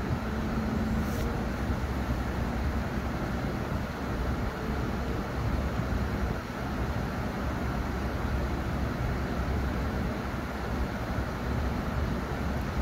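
Steady low rumbling noise with no speech and no distinct events.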